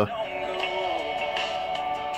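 Music from an FM broadcast playing through the small speaker of a Life Gear Stormproof crank radio, with steady held notes.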